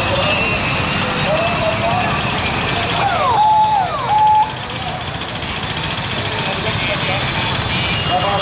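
Busy street traffic with engines and voices of people along the road. About three seconds in, two electronic tones sound one after the other, each dropping in pitch and then holding a short steady note.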